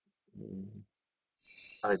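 Speech only: a short hesitation sound from the speaker about a third of a second in, then dead silence, then a word starting near the end.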